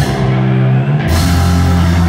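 Live heavy rock band playing loud, with bass and guitar holding low notes. For about the first second the cymbals and high end drop out, then the full band with drums comes back in on a held low bass note.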